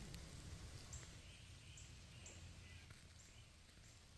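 Near silence: faint outdoor ambience with a low, steady rumble and a few faint, short, high chirps spaced through it.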